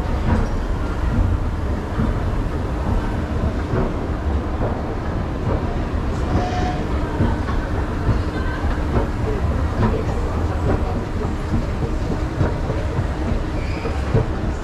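Escalator running, a steady low rumble and rattle with scattered clicks from the moving steps, over a faint steady hum.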